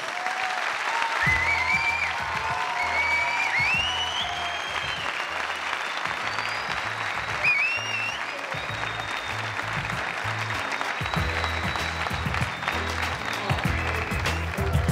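Theatre audience applauding at the end of a stand-up comedy set. Music with a steady bass beat comes in about a second in.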